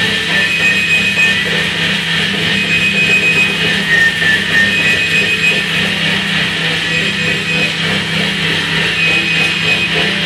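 Live improvised noise music: a dense, steady wash of electronic noise over a low drone, with a thin high tone that comes back about every two seconds and a brief pitch glide about four seconds in.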